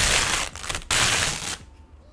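Thin plastic bag rustling and crinkling as it is pulled off a picture frame, in two loud bursts over the first second and a half, then quieter.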